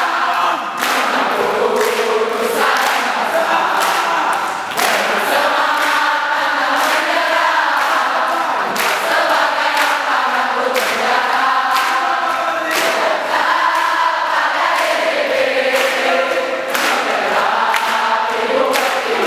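A large crowd singing a yel-yel cheer song together while clapping in time, with loud sharp handclaps marking the beat.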